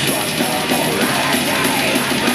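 Black metal band playing live, loud and unbroken: distorted guitars and drums under harsh screamed vocals.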